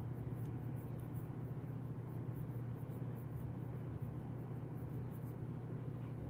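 Steady low hum of room tone with faint, soft rustling from a hand scratching a Bernese mountain dog's fur.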